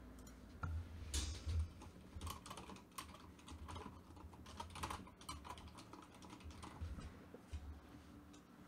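Typing on a computer keyboard: irregular, quick key clicks that stop near the end.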